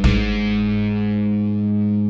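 Instrumental rock music: a distorted electric guitar chord struck once at the start and held, ringing over a steady low note.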